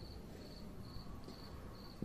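Faint room hiss with short, high-pitched, insect-like chirps repeating roughly twice a second.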